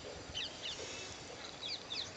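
Small birds chirping faintly: short, quick, falling chirps in little clusters, a few starting about half a second in and more near the end.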